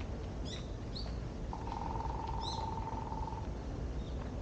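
Birds calling among the trees: a few short, high chirps, and from about a second and a half in a steady, trilling note held for about two seconds. Under them runs a low, steady background rumble.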